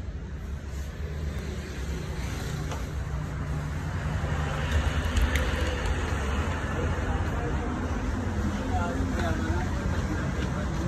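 Steady road-traffic rumble with voices in the background, growing louder over the first few seconds.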